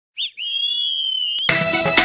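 Start of a song: a high, steady whistle-like tone held for about a second, then music with a regular beat comes in about a second and a half in.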